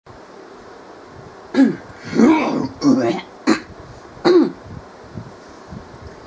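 A man coughing and clearing his throat, about five rough bursts in quick succession starting about a second and a half in, over a steady background hiss.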